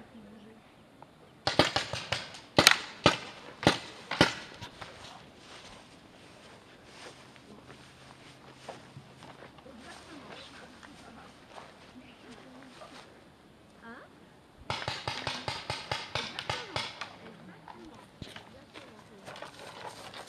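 Paintball markers firing: several sharp single shots in the first few seconds, then a rapid string of pops lasting about two seconds, near the three-quarter mark.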